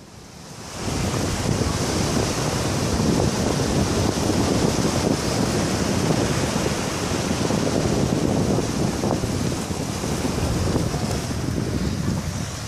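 Small waves breaking and washing up the sandy shore, mixed with wind rushing over the microphone; the steady rush comes up about a second in.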